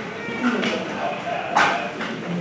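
Chimpanzee calls: a brief cry about half a second in and a louder, short high cry about one and a half seconds in, over people talking in the background.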